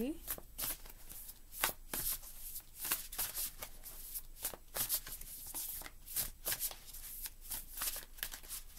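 A deck of tarot cards being shuffled by hand: irregular papery slaps and riffles of the cards, a few a second.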